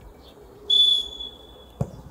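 Referee's whistle blown once, a short, steady high-pitched blast about a second in, signalling the kickoff. A short thump follows near the end as the ball is kicked off.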